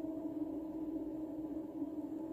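A background meditation drone of a few steady, unbroken low tones, a '417 Hz therapy' tone track, with no rhythm or melody.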